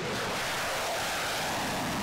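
F-16 fighter jet taking off and climbing out on afterburner: a steady, even rush of jet engine noise.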